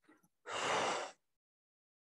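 A single short, breathy sigh or exhale close to the microphone, about half a second in, lasting under a second.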